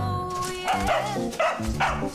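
A cartoon dog yipping and whining in three short bursts over background music with a steady bass line.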